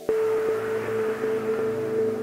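Meditative ambient music: a singing bowl is struck just after the start and rings on with a steady tone over a low drone.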